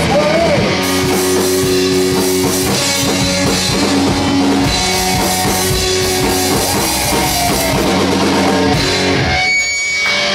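A live punk rock band of electric guitars, electric bass and drum kit playing loud and steady, with no vocals. About nine seconds in the bass and drums drop out, leaving a thin, high ringing tone.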